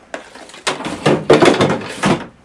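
Loud rustling, clattering handling noise close to the microphone. A short knock comes near the start, then about a second and a half of dense scraping and rattling.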